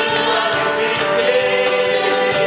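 Live gospel worship song sung by two worship leaders on microphones, with more voices joining in, over a steady beat.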